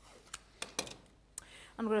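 Low-tack tape being torn off and handled: a few short crackles and taps scattered across two seconds. A voice starts right at the end.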